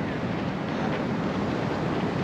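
Steady rush of ocean surf on a beach, mixed with wind on the microphone.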